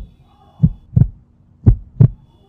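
Heartbeat sound effect: deep paired thumps, lub-dub, repeating about once a second.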